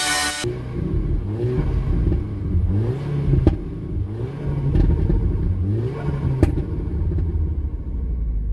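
Audi TTS (8J) turbocharged 2.0 TFSI four-cylinder being revved while parked: a series of throttle blips, the engine note rising and falling several times around 2,000–3,000 rpm, with two sharp pops. Background music fades out in the first half-second.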